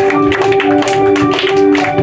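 Organ music of steady held notes, one lower note pulsing on and off beneath a sustained one, with a scatter of sharp taps over it.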